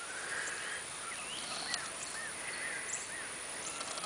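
Outdoor ambience: a steady faint hiss with a bird calling a quick run of about five short chirps in the middle.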